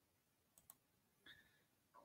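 Near silence: room tone with a couple of faint small clicks.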